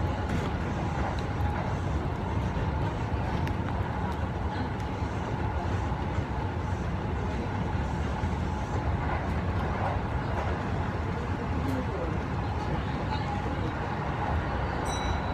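A train running, heard from inside the passenger car: a steady low rumble with a faint steady whine above it.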